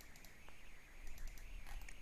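Faint computer mouse clicks, a few scattered single clicks over a low steady hiss, as objects are picked in a CAD program.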